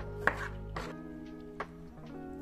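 Kitchen knife cutting through calamansi fruits onto a wooden cutting board: a few sharp knocks, the loudest shortly after the start, over soft background music.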